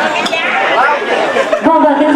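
Chatter of several people talking over one another, with one clearer voice coming forward near the end.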